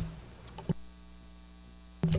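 Steady electrical mains hum from the meeting's microphone and sound system, with a single short click about a third of the way in.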